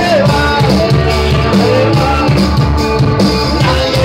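Live rock band playing loudly: a lead singer over electric guitars, bass guitar and a drum kit.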